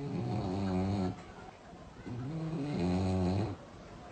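French bulldog snoring in its sleep: two long, low snores about two seconds apart, each lasting over a second.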